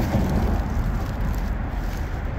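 Steady low rumble of distant road traffic, heavy in the deep bass, with no distinct events.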